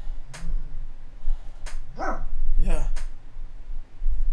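A dog barking twice in quick succession, about two seconds in.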